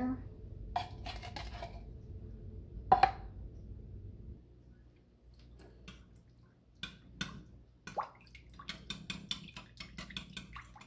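Metal utensils knocking on a glass bowl as canned cream of chicken soup is emptied into water, with one loud clank about three seconds in. In the second half, a fork clinks against the glass in quick taps as the soup and water are stirred together.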